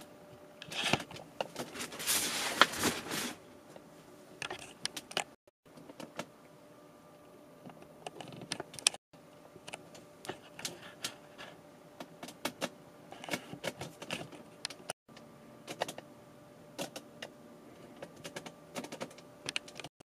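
Scattered light clicks, taps and rustles of handling, with a longer rustle about two seconds in and a faint steady hum underneath.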